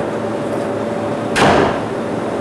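A storeroom door shutting about one and a half seconds in, heard as a single sudden knock that dies away quickly, over a steady hiss.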